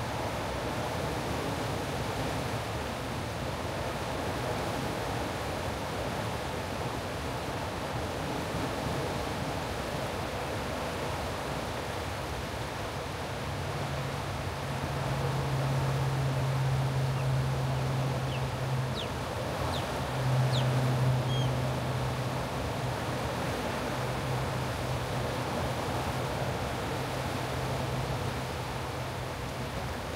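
Turbulent whitewater rushing below a dam, a steady hiss. About halfway through a low steady hum comes in, breaking off briefly twice.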